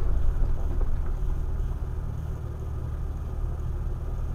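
Steady low rumble of a vehicle's engine and drivetrain, heard from inside the cab while driving slowly along a dirt trail. It eases slightly in loudness partway through.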